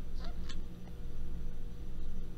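A man's short, stifled laugh near the start, over a steady low hum.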